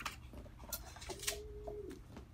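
Faint hand handling of vinyl transfer tape being smoothed onto a wooden sled: a few soft clicks and rubs, with a short steady hum-like tone lasting under a second, starting about a second in.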